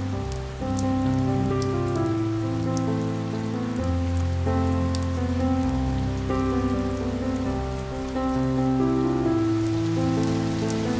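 Steady rain with individual drops ticking, mixed with slow instrumental relaxation music of long held notes and a bass line that changes every second or two.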